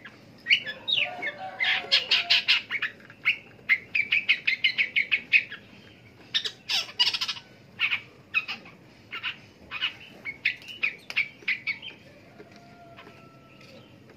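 Long-tailed shrike (pentet) singing: fast runs of short, high, chattering notes with brief pauses, dying away about twelve seconds in.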